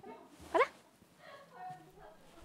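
Speech: a woman's short, excited exclamation, rising sharply in pitch, about half a second in, with only faint room sound around it.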